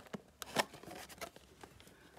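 Fingers handling a cardboard trading-card box, feeling along its edge for the opening flap: light scraping and rubbing with a few sharp ticks of cardboard, the loudest just over half a second in.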